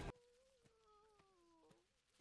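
Near silence, with a faint, drawn-out pitched cry that sinks slowly in pitch for about a second and a half and then cuts off.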